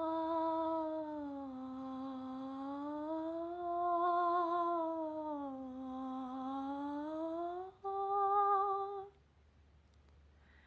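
A woman humming a few notes, sliding slowly and smoothly from one pitch to the next, rising and falling every couple of seconds. This is a glissando sung with resistance between the notes. It ends on a short, steady higher note that stops about nine seconds in.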